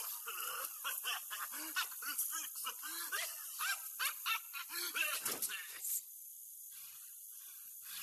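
A man laughing hysterically and wheezing while breathing laughing gas (nitrous oxide) through a mask, with a falling squeal about five seconds in. At six seconds the laughter cuts off suddenly, leaving a faint hiss and a few weak gasps.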